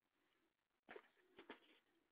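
Near silence, broken by two faint, short sounds about a second and a second and a half in.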